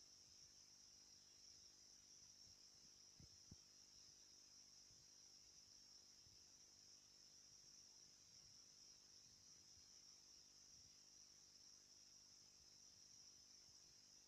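Faint, steady high-pitched chirring of insects in the field, unbroken throughout, with a couple of soft knocks about three seconds in.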